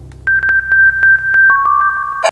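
Electronic news-intro theme: a held high synthesizer tone over evenly spaced ticks, about four or five a second, with a second lower tone joining about halfway through.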